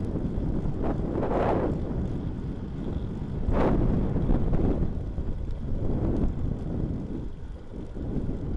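Wind buffeting the microphone of a handlebar-mounted camera on a moving bicycle: a steady low rumble that swells into stronger gusts about one and a half seconds in and again just before halfway.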